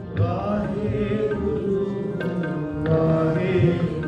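Sikh kirtan: sustained harmonium chords under a wavering sung melody, with tabla strokes below.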